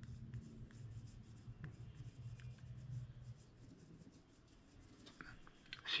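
Faint scraping and rubbing of a metal sculpting tool smoothing the headstock of a small oil-based clay guitar, with a low hum that stops a little after halfway.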